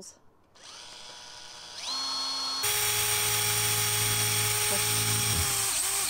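Cordless drill boring holes into the rubber tread of a new car tyre. The motor starts softly about half a second in and rises in pitch around two seconds. It then runs louder and steady at full speed for about three seconds before winding down and stopping near the end.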